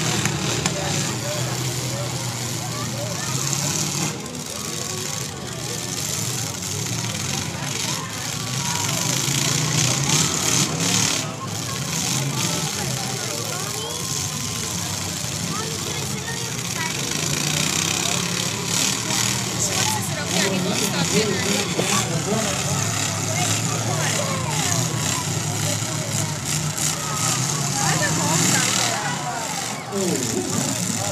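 Demolition derby car engines running and revving, with a few sharp knocks about 4, 5 and 11 seconds in. Steady chatter from a nearby crowd runs under it.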